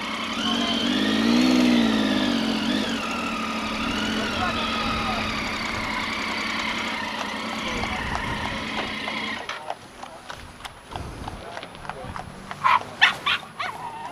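Motorcycle engine running at walking pace, with a brief rise and fall in revs about a second in; it is switched off about nine and a half seconds in. Clicks and knocks follow, with a few short sharp sounds near the end.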